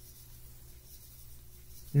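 A pause in a man's talk: faint room tone with a low steady hum, and his voice coming back in at the very end.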